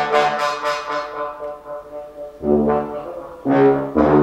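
A low brass ensemble of tubas and trombones playing. The texture thins after about a second, then two loud, low, sharply attacked notes follow in the second half.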